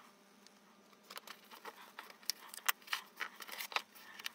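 Faint scattered taps and rustles of hands laying glued book cloth over grey binder's boards and pressing it down, starting about a second in.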